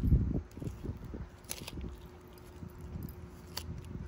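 Sulcata tortoise biting and chewing a whole cucumber held out by hand. There is a loud crunching bite at the start, then smaller crunches and clicks as it chews.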